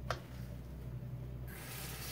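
A short click, then about a second and a half in the kitchen tap is turned on and water starts running from the faucet onto the dog-food mixture in a stainless steel sink, over a steady low hum.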